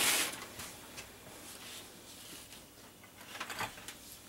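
Mostly quiet room tone: a brief hiss at the very start, then a few faint handling clicks near the end as a hand-held heat gun is lifted down from its hook. The heat gun is not yet running.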